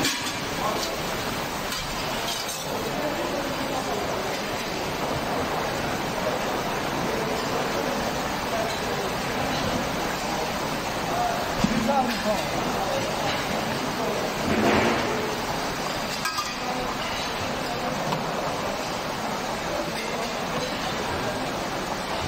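Indistinct voices of people talking over a steady din, with occasional clinks.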